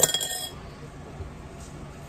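A single ringing clink of a spoon against a glazed ceramic mixing bowl as the bowl is handled and set down, dying away within about half a second.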